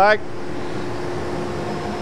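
Steady drone of running machinery with a faint, constant low hum tone.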